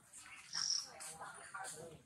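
Infant macaque crying in short, wavering whimpering calls, with a brief high shrill note about half a second in.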